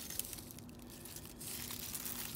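Dry, papery garlic skins and stalks crinkling and rustling as a bunch of dried garlic bulbs is handled, with faint scattered crackles.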